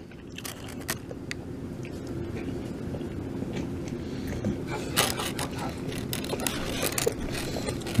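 Paper food wrapper rustling and crinkling in short, scattered bursts as a beef burrito is unwrapped and bitten, over a steady low hum.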